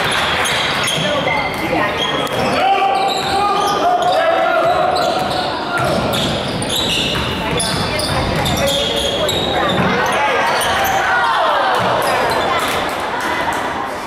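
Basketball dribbled on a hardwood gym floor, with players' sneakers squeaking and voices of players and spectators echoing in a large gym.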